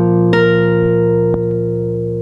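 Nylon-string classical guitar playing the closing notes of a folk song: two single plucked notes, about a third of a second and just over a second in, left ringing and slowly fading.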